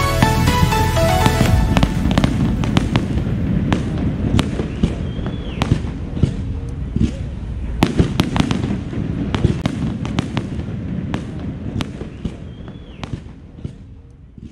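Fireworks display: a rapid run of sharp cracks and pops over a low rumble of bursts, with a short whistle twice, fading out near the end. Music plays for the first couple of seconds and then stops.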